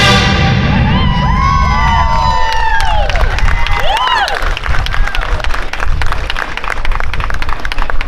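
Recorded dance music stops right at the start. An audience answers with whoops and cheers that rise and fall for a few seconds, then claps through the rest.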